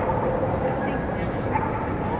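A dog giving short high calls, twice, over the steady chatter of people in a large hall.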